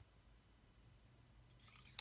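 Near silence: room tone, then faint handling rustle near the end as a watercolour brush is slid into its clear plastic travel tube, with one small sharp click.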